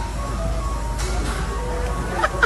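Electronic jingle music from an arcade claw crane machine: a simple beeping tune of short steady notes over a low steady hum.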